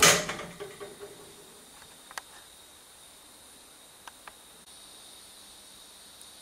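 A brief loud rustling scrape at the very start, then a few faint separate clicks about two and four seconds in, over quiet steady background hiss.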